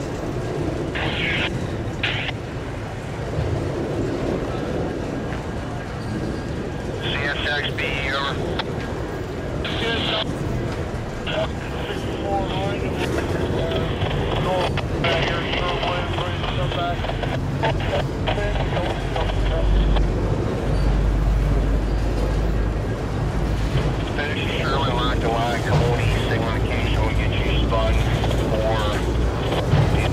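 Freight train of autorack cars rolling past on the rails, a continuous low rumble with wheel and car noise that swells slightly in the middle. People can be heard talking in the background.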